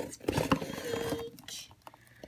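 Cardboard box flaps being opened and handled: a few short scrapes and taps in the first second, then quieter scattered rustling.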